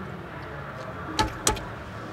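Two sharp knocks, about a third of a second apart, inside a car, over a steady low rumble.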